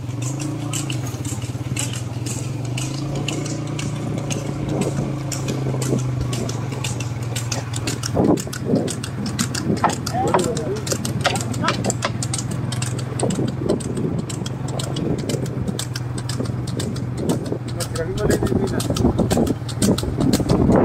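Motorcycle engine running steadily at low speed, with a rapid clatter of clicks and rattles from the buffalo cart on a paved road.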